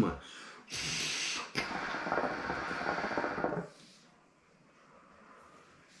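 A long drag on a hookah: air rushing through the hose and the water in the glass base bubbling for about three seconds, stopping suddenly. After it there is near quiet while the smoke is held.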